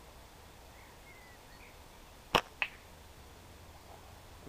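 A single slingshot shot about two seconds in. First comes a sharp snap as the rubber bands are released from full draw, then a second, fainter crack about a quarter second later as the ball strikes the target.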